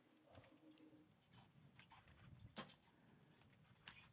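Near silence: faint outdoor ambience, with one faint click about two and a half seconds in.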